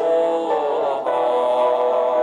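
A Buddhist lamp-offering chant sung slowly to a melody in long held notes, the note changing about half a second in and again about a second in.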